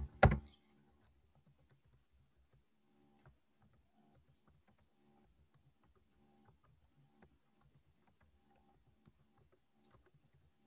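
Faint, irregular keystrokes on a computer keyboard, after a single sharp click right at the start.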